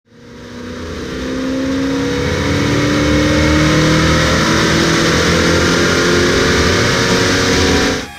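A 1979 Chrysler Cordoba's 360 V8 running on a chassis dyno, pulling under load with its pitch climbing steadily. The sound fades in over the first two seconds and cuts off suddenly near the end.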